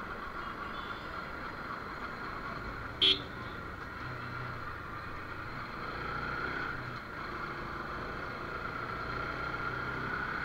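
Bajaj Pulsar 200 NS single-cylinder engine running steadily under way, mixed with wind noise at a helmet-mounted camera. A short, loud horn beep sounds once, about three seconds in.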